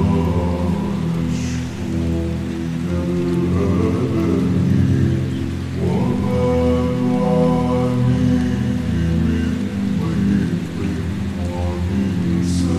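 Slowed-down, reverb-heavy a cappella nasheed: a male voice holding long, drawn-out notes with no instruments, over a steady layer of falling-rain sound. A new sung phrase begins about halfway through.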